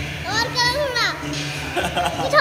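A young child's high-pitched voice, one short sing-song phrase of a word or two, over background music with a steady low beat.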